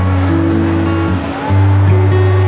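Amplified acoustic guitar playing chords, with held low notes that change about every half second to a second.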